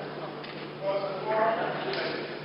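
Indistinct voices murmuring in a large chamber over a steady low hum, with a couple of faint knocks, about half a second in and near the end.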